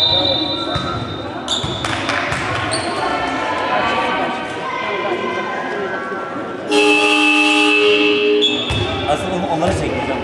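Basketball game in a sports hall: a ball bouncing on the court floor among voices, with a high whistle tone in the first second or so. A horn sounds for about two seconds, starting suddenly past the middle.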